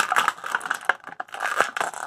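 Clear plastic blister packaging crinkling and crackling, with many sharp clicks, as a small action figure is pried out of it.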